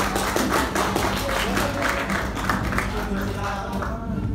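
Scattered hand clapping from an audience, several sharp claps a second, thinning near the end, over steady background music.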